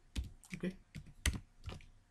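Typing on a computer keyboard: about a dozen quick, irregular keystrokes.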